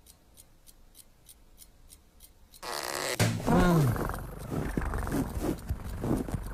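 Faint, even ticking, about three ticks a second. About two and a half seconds in, a cartoon cat's strained, growling vocal starts, with a wavering, falling pitch, over a loud rustle of bedclothes as it tugs the covers with its teeth.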